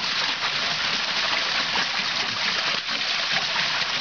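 Creek water running and splashing steadily at a small water wheel, a continuous even rush.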